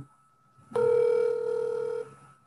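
A steady telephone tone as a phone call is placed. It starts under a second in and lasts just over a second.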